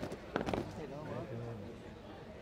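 Cadets' boots stamping on tarmac as a drill squad halts: a quick, ragged cluster of sharp stamps about half a second in. People talk in the background throughout.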